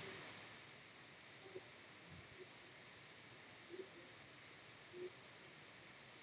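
Near silence: faint room tone with a few tiny, soft blips.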